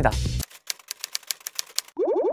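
Typewriter-style typing sound effect: a fast, even run of key clicks, about nine a second, starting about half a second in.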